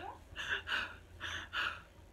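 A woman panting, about four quick, breathy breaths in and out, acting out being short of breath.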